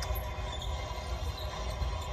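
A basketball game broadcast playing from a television: a steady wash of background arena noise with a low rumble and no commentary.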